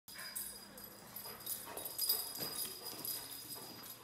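Scattered light clicks and taps of movement on a tile floor, faint over room tone.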